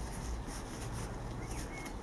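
Quiet background: a faint low hum and hiss with no distinct sound event.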